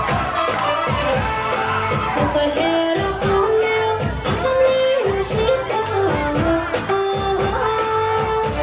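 A woman singing into a microphone over amplified band music, with a melody line and a steady, regular beat.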